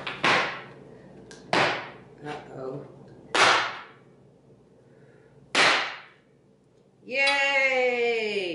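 Inverted metal bundt pan being knocked by hand to loosen the cake inside: four sharp knocks a second or two apart, with a few lighter taps between. About seven seconds in comes a long vocal exclamation that falls in pitch as the pan comes free.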